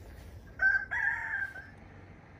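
A rooster crowing once: a short first note about half a second in, then a longer held note that ends after about a second.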